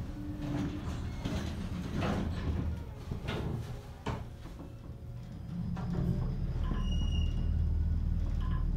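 Otis traction elevator: a few knocks as the car and doors get under way, then a low rumble that grows louder from about six seconds in as the car begins to descend. A short high tone sounds near the end.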